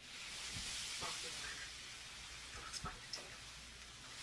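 Black+Decker Evensteam steam iron hissing as it presses over a damp pressing cloth, the water in the cloth turning to steam. The hiss starts suddenly and eases slightly after the first second, with a couple of faint knocks about one and three seconds in.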